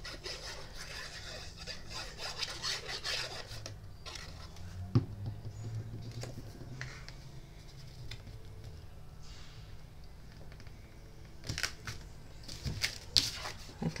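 Hands rubbing and pressing cardstock, a red paper piece being smoothed onto a white paper box, with a single sharp tap about five seconds in and a flurry of quick paper rustles and clicks near the end as the box is picked up.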